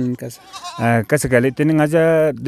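A man speaking, with goats bleating in the flock around him.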